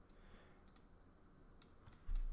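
Near silence with a handful of faint, sharp computer mouse clicks spread through it.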